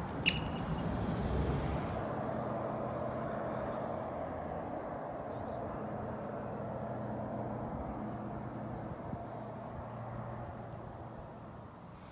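A yellow-bellied marmot gives a single short, sharp high chirp about a quarter second in. A steady low outdoor rumble runs underneath.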